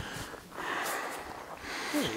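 A person breathing hard and out of breath after a climb: a long, noisy breath out, then another starting near the end.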